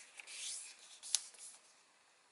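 Origami paper rustling and rubbing under fingers as a fold is pressed flat, with one sharp tick a little over a second in; the rubbing fades out toward the end.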